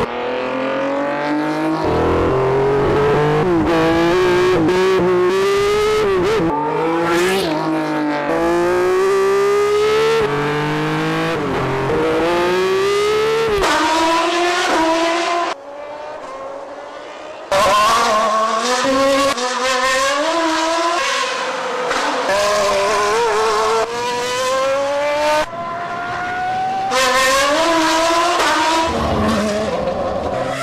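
Ferrari Formula One car engines at high revs, their pitch climbing and then dropping with each upshift, again and again. The sound is edited together from several cars and shots, so it changes suddenly several times, with a briefly quieter stretch about halfway through.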